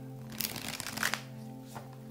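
Riffle shuffle of a Lo Scarabeo Harmonious Tarot deck of thin, flexible, unlaminated cards: a rapid run of card edges flicking past each other for under a second, ending in a sharper snap. Background music plays throughout.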